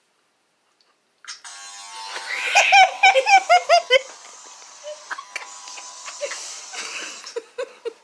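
Electric hair clippers switch on about a second in and buzz steadily until near the end. A burst of loud, high-pitched laughter breaks out over the buzz. Knocks and rustling follow as the phone is jostled.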